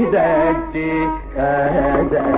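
Carnatic classical music in raga Reetigowla: a single melodic line of sliding, wavering ornamented notes, with a brief break a little past the middle.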